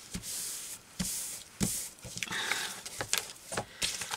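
Sheets of patterned paper rustling and sliding over a craft mat under the hands, in several short swishes, with a few light taps and clicks.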